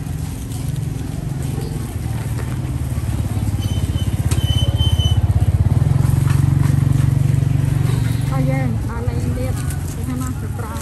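Small motorbike engine running close by, getting louder through the middle and easing off near the end, with voices around it.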